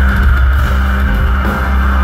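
Live heavy metal band playing loud, a continuous wall of distorted guitars over a heavy, unbroken low-end rumble of bass and drums, as heard from the crowd.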